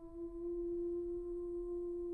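A soprano holding one long, steady note without vibrato, a pure-sounding straight tone.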